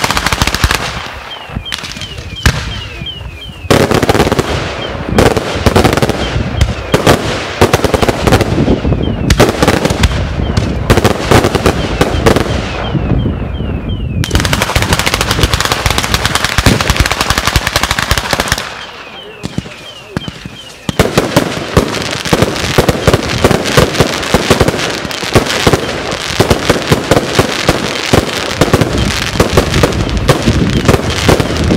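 Daytime ground-level firecracker battery (batteria sanseverese) going off: a dense, rapid crackle of bangs like machine-gun fire. It eases off briefly twice, about a second in and again around nineteen seconds in, then builds back up.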